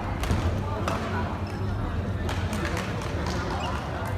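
Badminton rally: several sharp racket hits on a shuttlecock and quick footfalls on the court floor, over murmuring voices and a low hum in a large sports hall.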